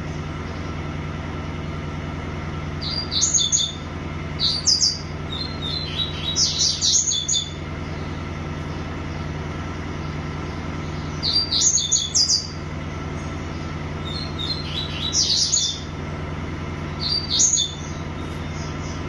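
A caged songbird singing short, high, rapid phrases, about six of them spaced a few seconds apart, with the longest a bit over a second. A steady low hum runs beneath.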